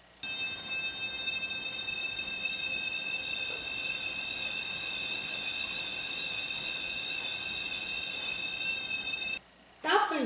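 Electronic tuner sounding a steady high electronic tone while being whirled in a circle on a string, its pitch shifting slightly higher as it swings toward the listener and lower as it swings away: the Doppler effect. The tone starts just after the beginning and cuts off suddenly near the end.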